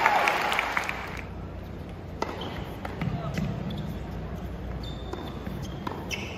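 Tennis ball being struck by rackets and bouncing on the court during a rally: sharp, isolated pops a second or more apart in a large hall. Crowd chatter fades away about a second in.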